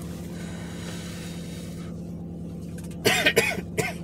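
A man coughing several times in quick succession about three seconds in, over a steady low hum inside the car.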